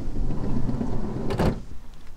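A van's sliding side door being pulled open, rumbling along its track for about a second and a half, then a sharp clack as it stops.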